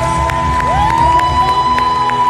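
Live worship band music in an arena: one long held high note over a steady beat of sharp hits, with the crowd cheering and whooping.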